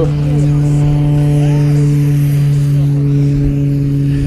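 Propeller aircraft engine running steadily, a constant low hum, with wind buffeting the microphone and a few brief voices.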